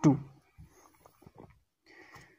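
A man's voice saying one short word, "two", then only faint, scattered low sounds close to room tone.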